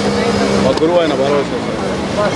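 Men talking face to face in a street crowd, in a conversational voice. A steady low tone runs under the voices for the first half-second or so, then stops.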